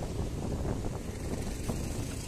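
Steady road traffic noise, with wind rumbling on the microphone.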